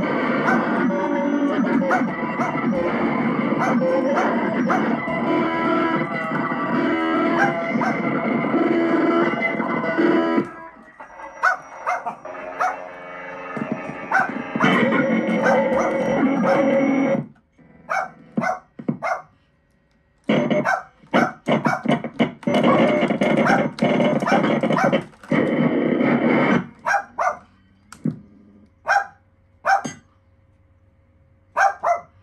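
Circuit-bent Casio SK-1 sampling keyboard played as a glitchy improvisation: a dense, loud electronic sound that cuts off suddenly about ten seconds in, then comes back in abrupt stretches that start and stop sharply, breaking into short single stabs with gaps near the end.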